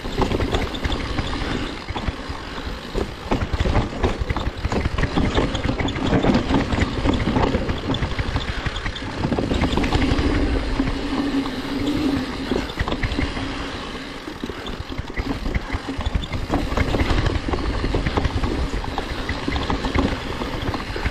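Enduro mountain bike descending a dirt forest singletrack: tyres rumbling over the ground, the bike rattling and knocking over bumps, and wind buffeting the microphone. A low steady hum joins in for a few seconds about halfway through.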